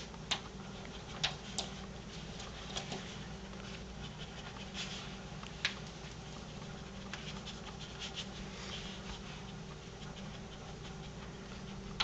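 Tamanduas (lesser anteaters) rummaging in fabric pet beds and on the floor: scattered sharp clicks and scratches from claws and bodies, several in the first three seconds and one near the middle, over a low steady hum.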